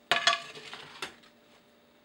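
Metal kitchen tongs clinking against a plate while pasta is served: two sharp clinks right at the start with a brief ring, a fainter clatter, then one more clink about a second in.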